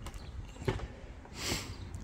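Shoes stepping up onto the aluminium deck of a Gorilla GLWP-55A-2 work platform: a few faint knocks, then a short hissing rush about a second and a half in.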